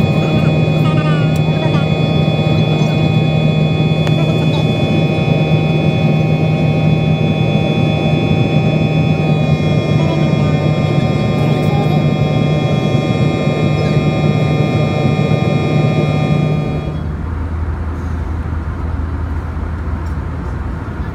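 Jet airliner engines heard from inside the cabin during the climb after takeoff: a loud, steady engine sound with a whine of several steady high tones over a strong low hum. About three-quarters of the way through it changes abruptly to a quieter, lower cabin hum without the whine.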